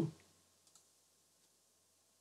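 Near silence (room tone) with a faint click about three-quarters of a second in.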